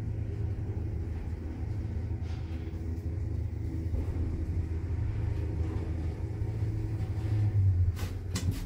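A 2015 electric passenger lift car travels upward, giving a steady low rumble inside the cabin that grows briefly louder near the end.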